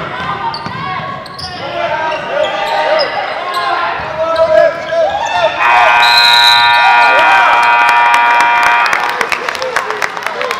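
Sneakers squeaking on a hardwood gym floor amid crowd chatter, then, about five and a half seconds in, the scoreboard horn sounds one steady note for about three seconds as the game clock runs out to end the period, followed by scattered clapping.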